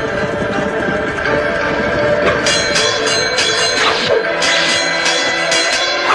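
Action background music with driving percussion. Sharp, repeated strikes become prominent about two and a half seconds in.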